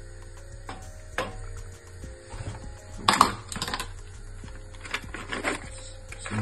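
Kitchen items being handled: a couple of sharp clicks, then a cluster of clattering knocks about three seconds in and a few more near the end, with faint background music under them.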